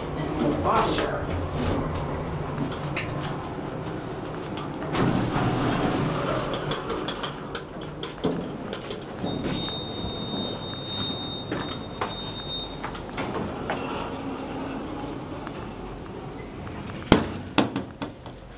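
Dover hydraulic elevator at a landing: a run of sharp clicks, then a steady high electronic beep held for about three seconds while the car doors stand open.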